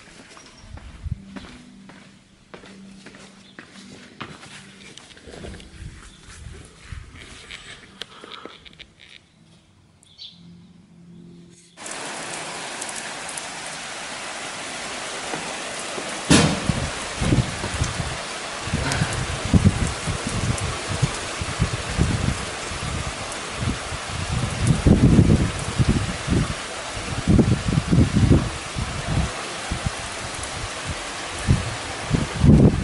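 Scattered quiet clicks and knocks, then, about 12 s in, heavy rain pouring steadily in a garden during a thunderstorm. About 16 s in a sharp thunderclap, followed by repeated low rumbles of thunder through the rest of the downpour.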